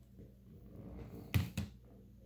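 Handling noise building up, then two sharp knocks about a quarter second apart, as makeup things are picked up and set down on a hard surface.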